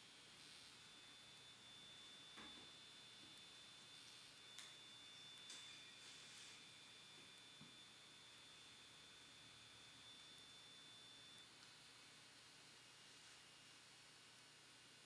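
Thin, steady high electronic sine tones from a live electronic music piece. A very high whistle holds throughout. A second high tone sounds until near the end and then stops, while a slightly lower tone comes in about halfway. A few faint clicks occur along the way.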